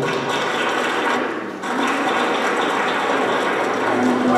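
Crowd applauding: a dense, even clatter of many hands clapping, with a brief dip about a second and a half in.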